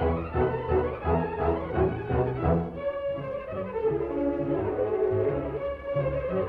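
Orchestral music, strings and brass, with a driving repeated rhythm in the low end.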